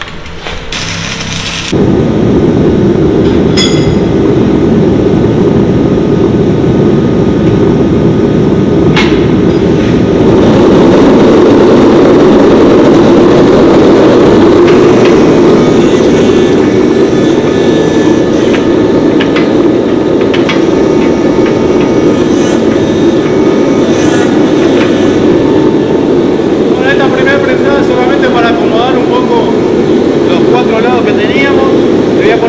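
Gas forge burner running with a loud, steady rushing noise that starts suddenly about two seconds in, with a couple of sharp clicks in the first ten seconds.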